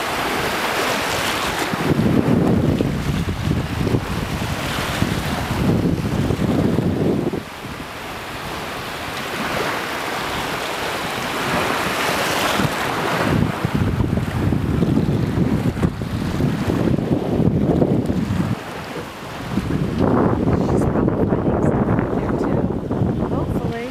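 Wind buffeting the microphone in several long gusts of low rumble, over the wash of small waves in shallow surf.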